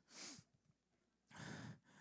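Two soft breaths into a close handheld microphone, one right at the start and one about a second and a half in, with near silence between them.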